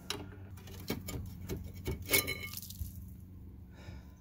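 A few light metallic clicks and clinks as a rusty rear brake caliper bracket and its bolts are handled and lifted off the hub, the most distinct about two seconds in, over a steady low hum.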